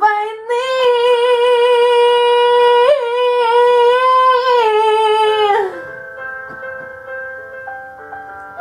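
A woman's voice holds one long sung note for about five seconds over a piano backing track. Near the end the voice stops and the piano backing plays on alone.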